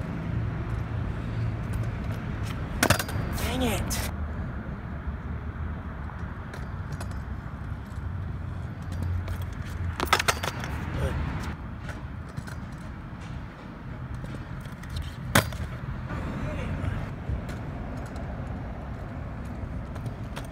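Stunt scooter wheels rolling on a concrete skatepark surface with a steady low rumble, and sharp clacks from the scooter hitting the concrete about 3, 10 and 15 seconds in as tricks are tried and landed.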